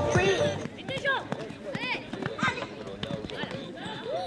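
A pony cantering on a sand arena, its hoofbeats dull and regular, with a few short voice calls rising and falling in pitch over them.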